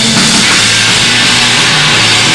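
Rock band playing loud and live: electric guitar and a drum kit, a dense and continuous wall of sound.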